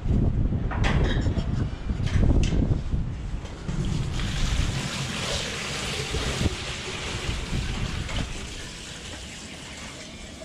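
Water poured from a bucket into a basin set in a tyre: a steady splashing pour starting about four seconds in and tailing off near the end. Before it, wind rumbling on the microphone with a few knocks of the bucket being carried.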